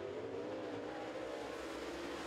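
A pack of dirt Super Late Model race cars' V8 engines running hard together right after the green-flag start, a steady engine drone.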